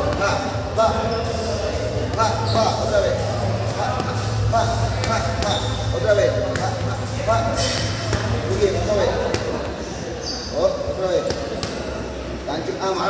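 Boxing gloves smacking focus mitts in a mitt drill: repeated sharp slaps at uneven intervals, in short combinations.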